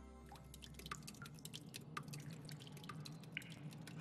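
Faint water dripping: a rapid scatter of small clicks and plinks over a soft low hum.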